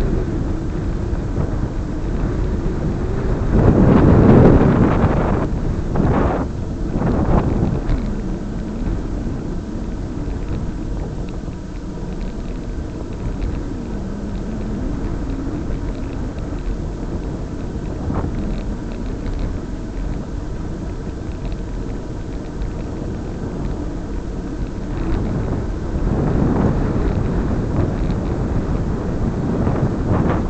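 Steady wind and road noise from a camera moving along a paved road. It swells into a loud rush about four seconds in, with two shorter rushes soon after and another near the end.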